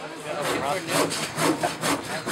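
Hand saw cutting through a wooden board in quick, even back-and-forth strokes, starting about half a second in.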